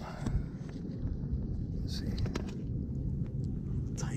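Steady low outdoor rumble with a few faint clicks of stones and pebbles as rocks are turned over by hand.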